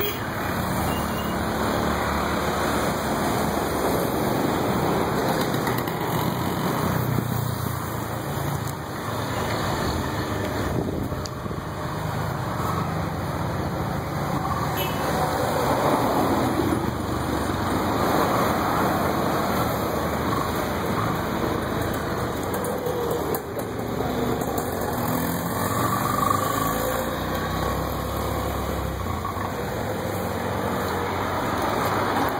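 V-twin engine of a Morgan three-wheeler running steadily close by, with a low rumble.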